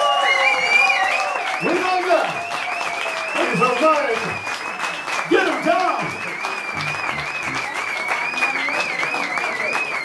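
Live blues band with the audience applauding and shouting, over one long high note with a fast vibrato that is held throughout.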